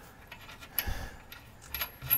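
A few light metallic clinks of the lower shock-mount bolt and nut being handled as the bolt is pushed through the shock eye and the nut brought up to thread on.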